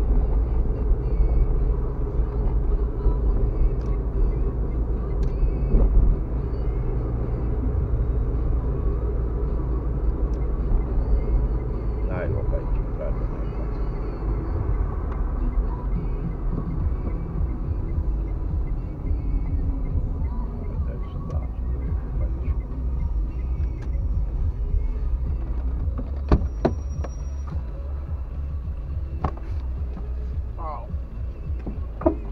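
Road noise inside a moving car's cabin: a steady low rumble of engine and tyres, with a few short clicks near the end.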